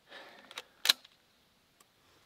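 Pump-action shotgun being handled and its action worked: a brief rustle, a light click, then one sharp metallic clack about a second in.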